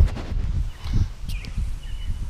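Low, uneven rumbling and a few soft knocks and scuffs from a head-mounted action camera in its waterproof housing as the wearer moves his head and bends down.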